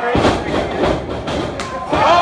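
Several sharp thuds of pro wrestlers' blows and bodies landing in the ring, with crowd voices underneath.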